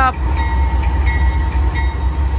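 Union Pacific diesel-electric locomotive backing slowly, its engine running loud with a deep, steady low drone and a faint steady whine above it.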